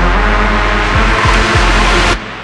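Hard trap electronic dance track building up: heavy sub-bass with repeated kick hits that fall in pitch, under a noise sweep that grows brighter toward the drop.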